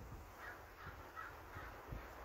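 Faint bird calls: a series of four short calls, evenly spaced about a third of a second apart.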